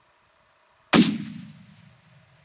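A single hunting-rifle shot from a Gunwerks long-range rifle about a second in: a sharp crack, then a low echo that fades away over the next second.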